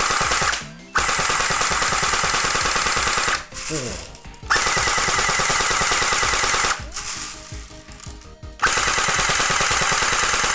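WELL D-90F electric airsoft gun firing four full-auto bursts: a short one at the start, then three of about two seconds each, its gearbox cycling with a steady whine. It runs on a LiPo battery in place of its dead stock battery, which raises its rate of fire considerably.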